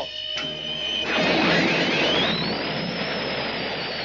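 Cartoon sound effect of a space fighter's jet engine spooling up for take-off. A rushing roar builds from about a second in, with a whine that climbs in pitch and then holds high.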